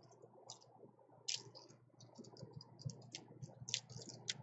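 Faint, irregular light clicks and clacks of plastic nail polish swatch sticks knocking against each other as they are handled and wiggled into place, a few a second, the sharpest about a second in and near the end.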